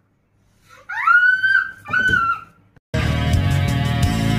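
A high-pitched wail that rises, then holds for about a second, breaks briefly and sounds once more. Near the end, loud heavy rock guitar music starts suddenly.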